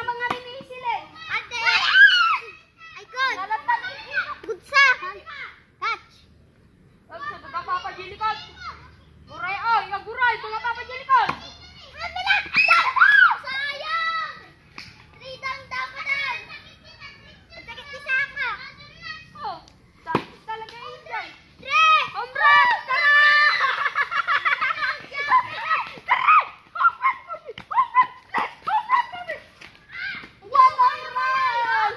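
Children's voices at play, shouting and calling out to each other in short bursts, with a stretch of louder, overlapping high-pitched shouting about three-quarters of the way through.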